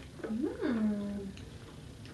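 A person's brief wordless vocal sound that swoops up in pitch and back down, then holds a low steady hum for about half a second.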